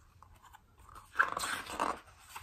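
A picture book's paper page being turned by hand: a rustle of paper that starts about a second in and lasts just under a second.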